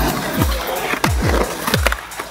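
Skateboard wheels rolling on a concrete ramp, a steady rough rumble. It runs under electronic music with deep bass kicks that fall in pitch.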